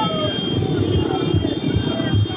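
Motorcycle engines running as a procession of bikes passes, with voices calling out over the traffic noise.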